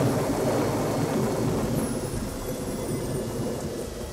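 Rolling thunder: a low rumble that slowly dies down.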